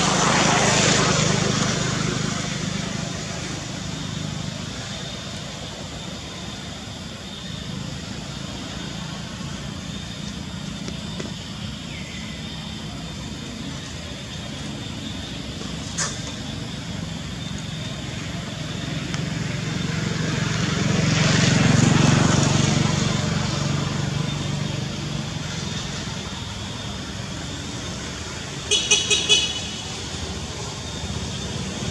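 Motor vehicles passing on a nearby road over a low engine hum: one fades out in the first few seconds, and another swells to a peak past the middle and fades away. A short run of high chirps near the end.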